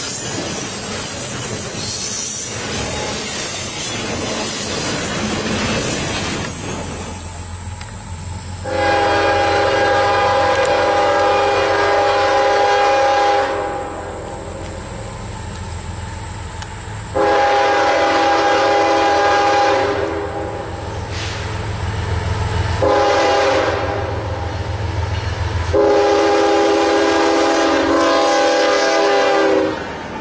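Double-stack intermodal freight cars rolling past for the first few seconds. Then a Norfolk Southern diesel locomotive approaches with its engine rumbling and sounds its multi-chime air horn four times, long, long, short, long: the standard grade-crossing warning signal.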